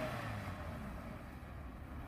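A 2001 Toyota Celica's four-cylinder engine, faint and distant, running as the car drives away: a low, steady hum.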